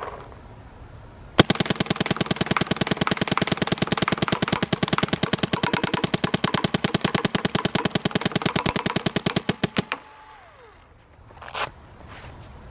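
Empire Axe 2.0 electronic paintball marker fired in semi-automatic mode: a fast, even string of shots starts about a second and a half in and stops at about ten seconds. A single short sound comes near the end.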